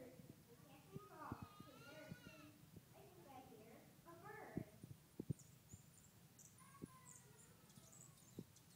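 Faint, indistinct children's voices murmuring in a hall, with a few soft thumps about halfway through.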